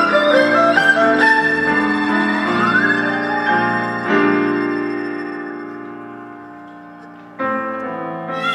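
Instrumental electronic dance music with keyboard notes and a rising pitch glide. The track then fades down over a few seconds before the full mix comes back suddenly near the end.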